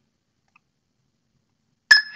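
Silence, then near the end a single sharp click with a brief two-note ringing beep: the warehouse app's confirmation tone as the storage location is accepted.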